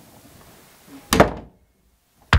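A wooden interior door being shut: one sharp, loud thud about a second in, with a brief ring-out, over faint room tone.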